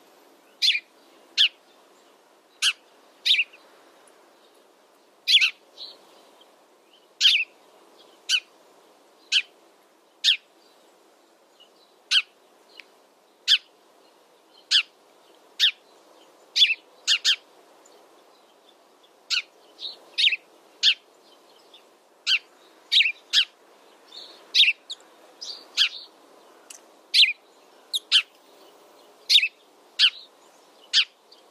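House sparrow chirping: a steady run of short, sharp single chirps, one or two a second at irregular spacing and some in quick pairs, over faint steady background noise.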